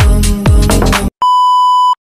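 Electronic dance music with a heavy beat stops abruptly about a second in. After a brief gap comes a steady, high test-tone beep of the kind that goes with a colour-bar test pattern, held for most of a second.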